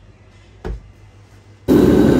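Quiet room with one soft thump about a third of the way in. Near the end a loud, steady roar starts suddenly: a restaurant wok's gas burner running under a wok of boiling broth.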